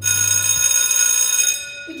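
Electric school bell ringing loudly for about a second and a half, then fading away: the signal that the lesson is over and the next period is starting.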